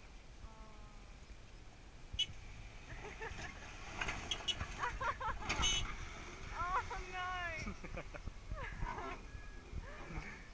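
Four-wheel-drive ute's engine working at crawling speed up a rocky track at a distance, a low steady rumble, with voices calling out over it from about four seconds in.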